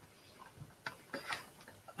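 A few faint, irregular clicks and ticks, mostly in the second half, in an otherwise quiet room.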